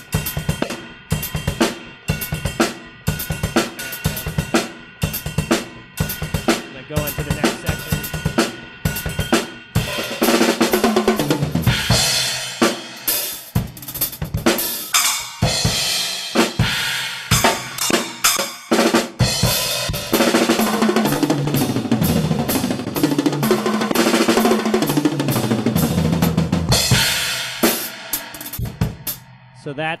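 Drum kit played alone: a steady beat on snare, bass drum and cymbals, breaking about ten seconds in into a long, fast fill of sixteenth-note triplets that runs down around the toms and back up again.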